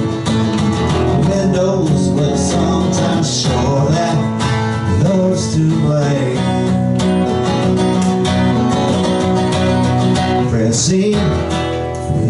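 Acoustic guitar strummed and picked solo, an instrumental break in a live country-folk song.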